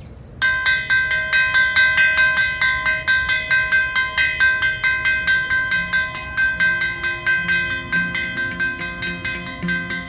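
A metal school bell, a plate hanging from a wooden post, struck rapidly with a metal rod, about four strikes a second, each ringing on into the next. From about halfway through, background music with low notes joins under the ringing.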